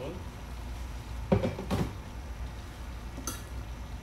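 Cookware clattering in the kitchen: two knocks close together about a second and a half in, then a light click near three seconds, over a steady low hum.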